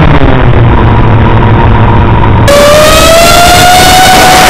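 FPV quadcopter's four RCX 2206 brushless motors spinning KK5040 props, heard from the onboard camera: a low drone at low throttle, then about two and a half seconds in a sudden throttle punch to a loud, higher whine that rises slightly in pitch.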